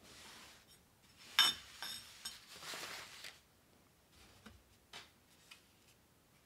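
Hands handling painting things and paper cards: a sharp clink with a short ring about a second and a half in, a few lighter knocks just after, then about a second of paper rustling, and a few faint taps near the end.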